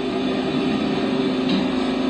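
A steady low hum holding one pitch with a few fainter overtones, at an even level throughout.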